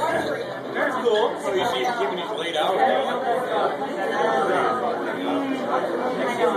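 Indistinct chatter of several people talking at once, with no single voice clear, in a large room with some echo.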